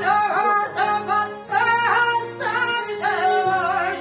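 Live Albanian folk music: an ornamented sung melody over accordion, violins, long-necked lutes and a frame drum.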